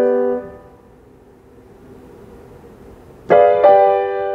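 Steinway grand piano playing classical music. A held chord is released just after the start, followed by a pause of nearly three seconds. Then two chords are struck in quick succession near the end.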